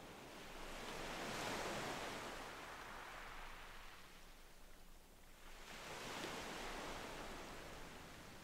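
Faint ocean waves washing in: two slow swells of surf, the first cresting about a second and a half in, the next about six seconds in.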